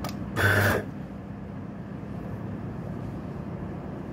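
A brief scrape, about half a second long, from the metal bottomless portafilter with its dose of ground coffee being handled on the scale, over a steady low hum.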